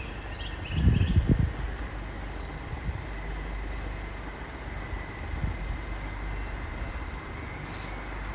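Greater Anglia Class 720 Aventra electric multiple unit drawing slowly into the station: a steady low rumble with a faint, steady high whine. A few short chirps sound in the first second.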